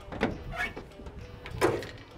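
Steel hood of a 1966 Chevy C10 being unlatched and lifted open on its hinges: a few short clicks and clunks, the loudest about a second and a half in.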